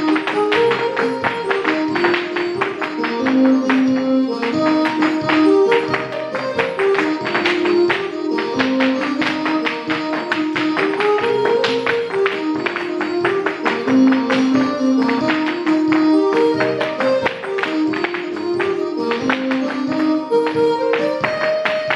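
A recorded Irish traditional set-dance tune playing steadily, with a dense run of sharp clicks and taps from two dancers' hard shoes striking the floor in time with it.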